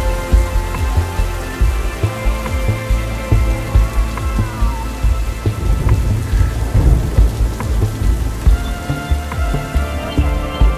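Ambient soundtrack music with steady held tones, layered with the sound of rain and a heavy, rolling thunder rumble.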